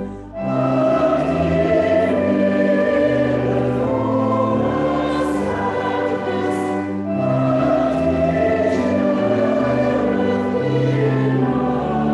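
Church choir singing a carol in long, held phrases, with a short break for breath just after the start and another about seven seconds in.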